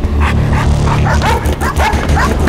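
A dog barking in a quick run of short, high yelps, about four a second, over a low droning music score.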